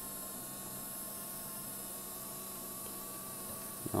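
Low, steady electrical hum and buzz from a powered home-built coil and resonator rig, with several fixed tones and a faint high hiss, unchanging throughout.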